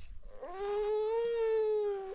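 A small child's single long wailing cry, starting about half a second in and holding a nearly level pitch for about a second and a half, as her hair is being combed.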